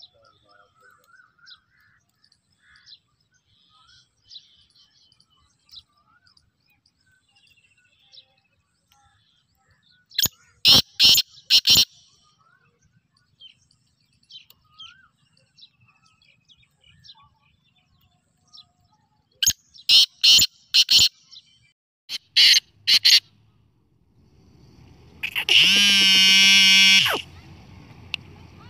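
Caged black francolin calling: three runs of short, loud notes in quick succession, over faint chirping of small birds. Near the end comes a louder, longer pitched call of about two seconds.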